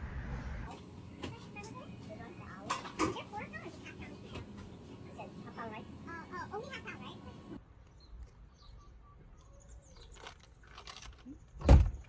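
Quiet, indistinct voices with scattered clicks, then a single sharp thump near the end.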